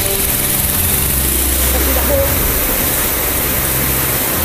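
River rapids rushing steadily over rocks, with a low steady hum underneath.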